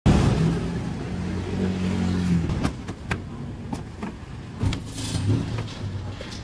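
Street traffic: a vehicle engine runs close by, loud at first and fading after about two and a half seconds. Light clicks and knocks follow.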